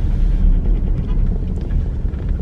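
Steady low rumble of a car heard from inside its cabin, from its engine and tyres on the road.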